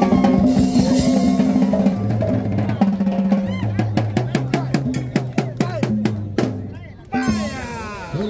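Live band with saxophone, trumpet and drum kit playing a dance tune; it winds down with a string of drum strokes and stops about seven seconds in, and voices follow.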